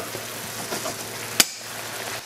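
Chopped asparagus sizzling steadily in a frying pan with a little water added, cooking in the chicken juices. A single sharp click, like metal tapping the pan, comes a little past halfway.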